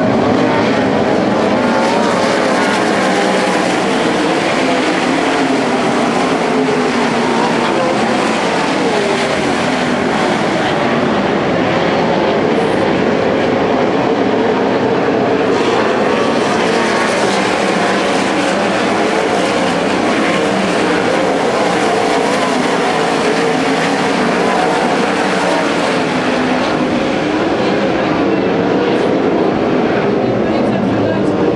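A field of winged sprint car engines circling a dirt oval, many engines running at once with their pitches rising and falling over one another in a loud, continuous mass of engine sound.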